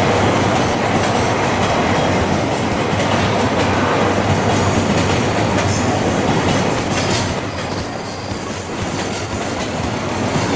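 Freight train of container flatcars rolling past at close range: a steady, loud rumble and rattle of steel wheels on the rails. A thin, high-pitched whine comes in about six seconds in and holds.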